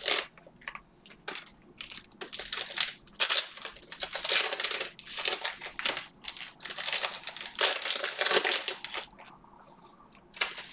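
Cellophane wrappers of trading-card cello packs crinkling in irregular bursts as the packs are handled, with quieter gaps about a second in and near the end.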